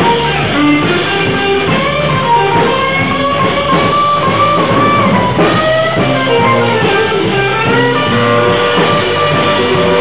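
Live blues band playing: an electric guitar leads with bent, sliding notes over a bass line and drums, steady and loud throughout.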